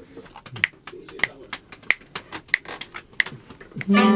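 Sharp clicks at an even beat, about one every two-thirds of a second, five in all, with fainter ticks between them: a tempo count-in before a take.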